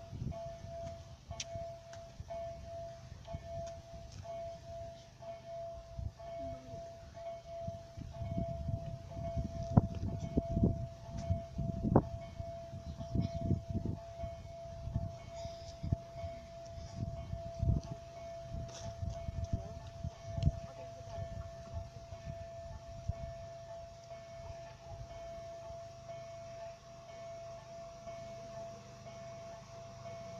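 Gusty wind buffeting the microphone over a steady high hum, with the rumble of an approaching Stadler Flirt electric multiple unit building near the end.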